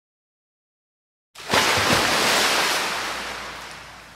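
Sound effect of a rush of noise like breaking surf, starting suddenly about a second and a half in and slowly fading away.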